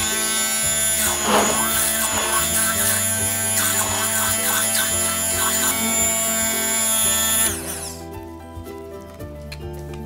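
Handheld electric immersion blender running steadily with a high motor whine as it blends sodium alginate into water, then switched off about seven and a half seconds in, its pitch sliding down as the motor stops. Background music plays underneath.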